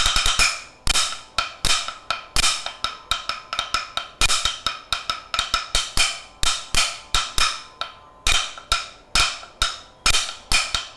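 Sticks striking a round wooden stool seat used as a practice pad for Yakshagana chande drumming: sharp, dry wooden clicks in a rhythmic pattern with quick flurries of strokes, one of them near the end.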